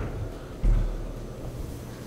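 A single dull, low thump about half a second in, fading over half a second, over a faint steady low hum.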